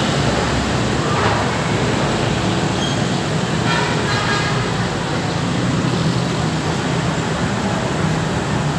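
Steady hubbub of a dense, packed crowd of commuters, many voices mixing into a constant noise, with a few voices standing out briefly around the middle.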